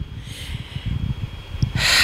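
A pause in an elderly woman's speech: a low rumble on the handheld microphone, then near the end a sharp, loud intake of breath through the nose before she speaks again.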